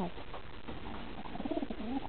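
Racing pigeon cooing: a short falling note at the start, then a wavering coo that rises and falls in the second half.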